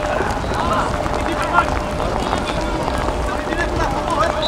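Scattered shouts and calls of players and coaches across an outdoor football pitch, over a steady background noise.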